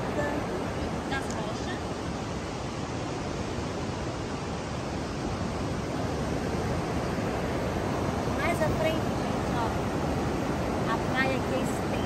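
Steady rush of ocean surf breaking on a sandy beach.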